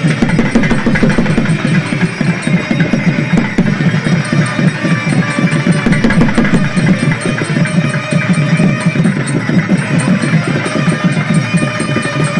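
Temple ritual music with fast, continuous drumming.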